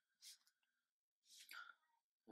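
Near silence, with two faint, short breaths from a person near the microphone, one just after the start and one past the middle.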